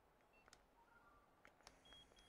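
Near silence broken by a few faint short electronic beeps at different pitches and light clicks, from a handheld electric gua sha massager being operated by its buttons.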